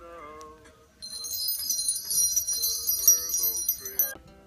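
Jingle bells ringing, starting about a second in and stopping abruptly near the end, over quieter background music.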